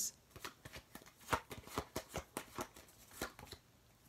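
Tarot cards being handled: a run of quick, irregular card snaps and taps, several a second, as cards are drawn from the deck and laid on the spread.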